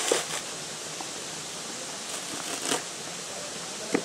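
Fibrous coconut husk being torn off by hand: a few short rustling rips over a steady background hiss.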